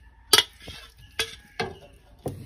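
Steel spoon scraping and clinking against a steel plate while scooping fried pork: three sharp clinks, about a third of a second in, just past the middle, and near the end, with scraping between them.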